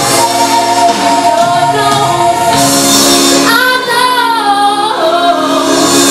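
A young female singer belting a gospel-style show tune over sustained instrumental accompaniment. She holds long notes with a wide vibrato, the longest about halfway through, sliding down as it ends.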